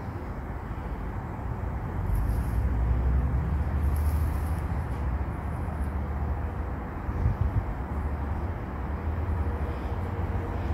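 Outdoor ambient noise: a steady low rumble with a faint hiss above it and no distinct events.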